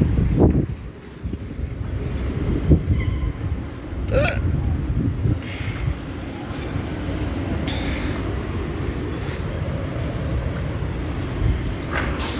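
Uneven low rumble of wind on a phone microphone outdoors, over the general noise of city traffic.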